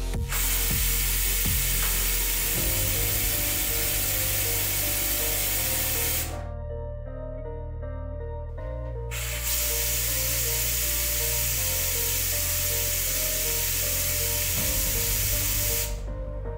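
Compressed air at about 4 bar hissing through a small 3D-printed turbine that drives a propeller, in two runs: a steady hiss of about six seconds that cuts off, then after about three seconds a second steady hiss. Background music runs underneath.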